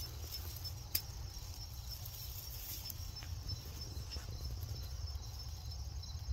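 Insects chirping in a steady, pulsing high trill, over a continuous low rumble, with a single sharp click about a second in.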